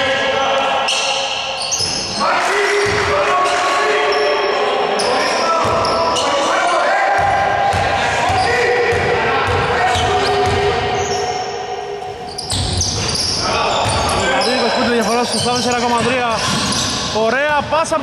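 A basketball bouncing on a hardwood gym floor during free throws, with players' voices calling out and echoing in the large hall. Near the end, sneakers squeak sharply on the floor as play breaks into a run.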